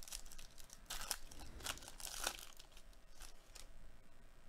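Foil wrapper of a Topps baseball card pack being torn open and crinkled by hand: a run of short crackling rips, loudest about a second in and again a little after two seconds.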